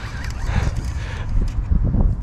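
Low, uneven rumbling and soft knocks on the microphone: handling noise from an angler straining against a heavy fish on rod and reel.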